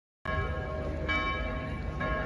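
Church bell tolling for a funeral: a ringing tone with a second strike about a second in, over low outdoor crowd noise.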